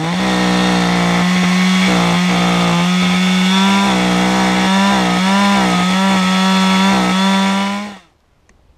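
Chainsaw revving up and running at high revs, its pitch dipping briefly several times under load as it cuts through a fallen log.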